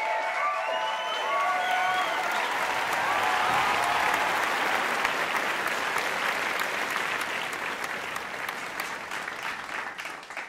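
Audience applauding, with cheers and whoops in the first couple of seconds. The clapping thins toward the end into scattered claps.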